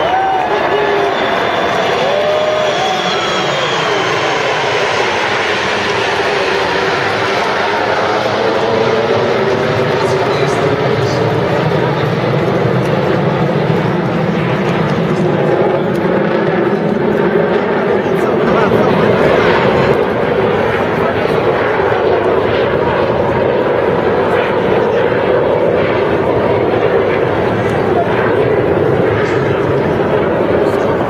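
Jet noise from the Frecce Tricolori formation of Aermacchi MB-339 single-engine jet trainers flying over, a loud steady rushing sound whose pitch slowly sweeps as the aircraft pass.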